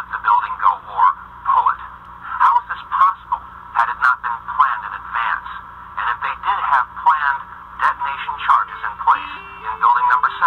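Thin, narrow-band speech with a telephone- or radio-like quality, one voice talking in short phrases. Near the end, a melody of plucked guitar notes starts under it.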